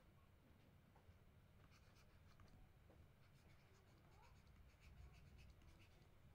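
Near silence with faint, light scratching and ticking of a stylus writing words on a tablet, mostly through the middle of the stretch, over a low steady hum.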